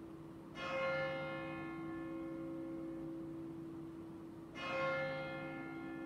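A church bell tolling: two single strikes about four seconds apart, each ringing on and slowly fading.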